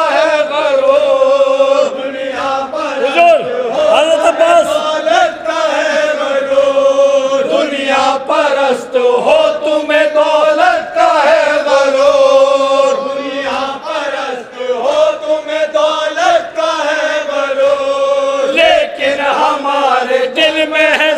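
A group of men chanting a Shia noha (mourning lament), a lead voice at the microphone with the others singing along; the melody is carried in long, wavering held notes.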